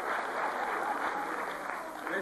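Theatre audience applauding: dense, even clapping that thins a little toward the end.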